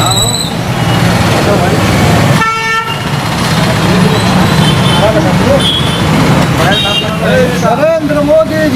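Chatter of a small crowd over street noise, with a vehicle horn tooting once, briefly, about two and a half seconds in; voices grow louder near the end.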